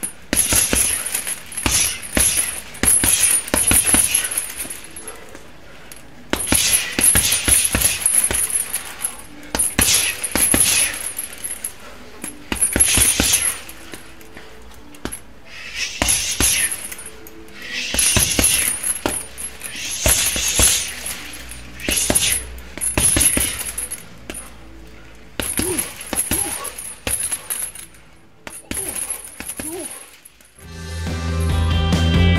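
Bare-fist punches and elbow strikes landing on a heavy punching bag in fast flurries with short pauses, the bag's metal hanging hardware jangling under the blows.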